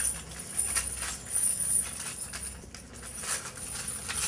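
Steel handcuffs being unlocked with a handcuff key and taken off a wrist: light metallic jingling with several sharp clicks.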